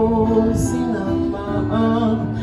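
Live music: a voice singing held notes, with guitar accompaniment.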